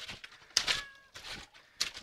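Wash water and clothes sloshing in a top-loading washing machine tub as a wooden board is plunged down by hand for extra agitation, with a few short knocks. A short high note sounds near the middle.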